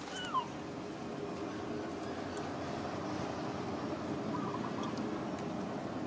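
Young macaque giving a brief squeak, then a short run of faint high chirps, over a steady background hum.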